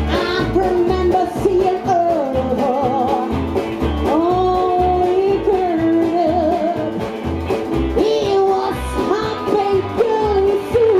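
Live trash-country band playing: upright bass and drums keep a steady beat of about two pulses a second under electric guitar, with long held, wavering melody notes that slide up into pitch about halfway through and again near the end.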